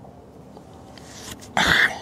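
A man coughs once, briefly, about one and a half seconds in.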